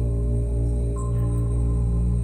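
A cappella music: a deep, steady bass drone sung and held without words between lines of the song.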